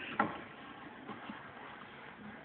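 A cardboard wrapping-paper tube knocks once, sharply, just after the start, then only faint scattered handling sounds.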